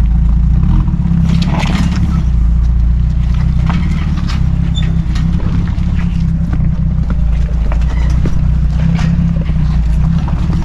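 Jeep Cherokee XJ's engine running at low revs as it crawls over rocks, a steady low rumble that shifts a little with the throttle, with scattered knocks and crunches from tyres on the rocks.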